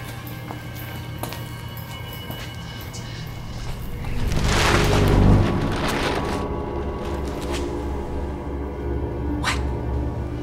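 Horror film score with a sustained low drone. About halfway through, a loud noisy surge swells and breaks off sharply, and plastic sheeting rustles.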